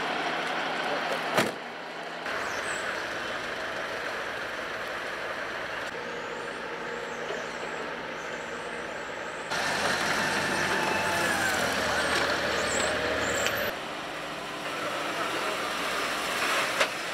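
Outdoor traffic noise with vehicle engines running, changing abruptly at several edits. A sharp click comes about a second and a half in, and a louder stretch with a low engine rumble lasts about four seconds past the middle.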